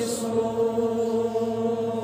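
A voice singing a devotional naat, holding one long, steady note after a phrase of moving melody.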